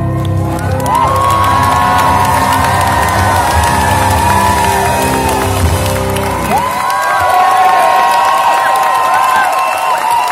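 Live concert crowd cheering, whooping and applauding at the end of a song. Under it, the accompaniment's last sustained chord rings on and dies away about six and a half seconds in.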